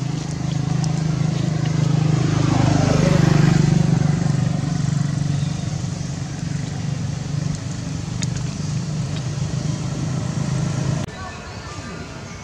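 A motor vehicle's engine running steadily, swelling to its loudest around three seconds in while its pitch falls. The sound cuts off abruptly near the end.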